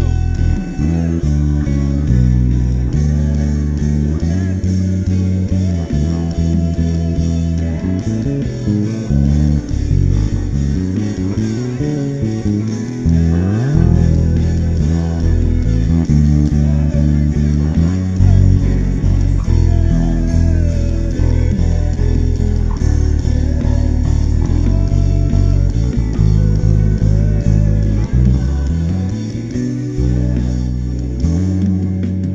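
Electric bass guitar played fingerstyle: a worship bass line of low notes that change every beat or so, with quick runs and a slide about halfway through.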